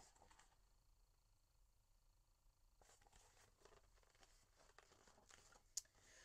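Near silence: room tone, with faint rustling of a paperback picture book being handled in the second half and a soft click shortly before the end.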